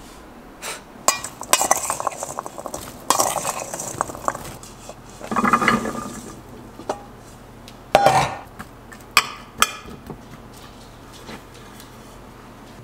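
Kitchen clatter: a glass baking dish of chopped vegetables and utensils clinking and knocking as they are handled, with a few sharp knocks about eight to ten seconds in.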